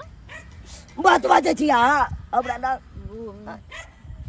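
A person's wordless voice, high and wavering in pitch, starting about a second in, then a lower wavering voice near three seconds.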